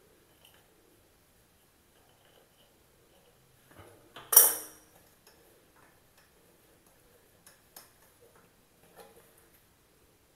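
A steel adjustable wrench clinks once, sharply and with a short ring, about four seconds in. Faint metallic clicks and ticks follow as the toilet's braided supply hose coupling nut is unscrewed by hand from the angle valve.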